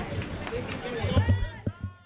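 Indistinct voices calling out and shouting, louder in the second half, with a few short knocks near the end.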